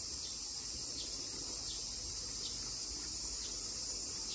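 Steady high-pitched trilling of insects, a continuous summer chorus with no breaks.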